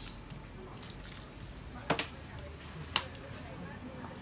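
Wet, squishy handling of goo-coated packets lifted out of a bowl of water and set down on a table, with sharp taps around two seconds in and again about a second later.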